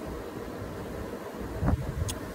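Steady low rumble of wind on the microphone, with a short low sound near the end.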